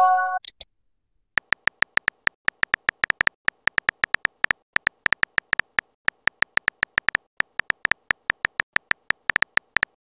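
Simulated phone-keyboard typing clicks from a texting-story app: a rapid, even run of about five clicks a second while a message is typed out, starting about a second in. At the very start a short electronic chime of several tones sounds.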